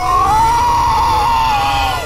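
A man's long, held villainous yell, one sustained note for about two seconds that drops off at the end, over a low rumble.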